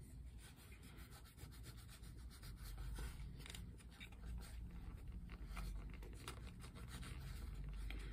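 Pipe cleaner being pushed through the stem of a new tobacco pipe to clear out dust, a faint scratchy rubbing in many short irregular strokes.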